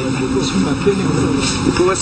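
Voices with drawn-out, bending pitch, over a steady hiss.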